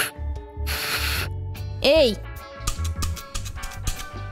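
Breathy puffs of air blown into a plastic toy trumpet that gives no note, a hiss of breath about a second in, over background children's music with a steady low beat. A short exclamation of "Эй!" comes around two seconds in.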